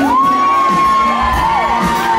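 Concert audience whooping and cheering. One long high 'woo' jumps up at the start and is held for over a second before falling, while other voices cry out over it near the end.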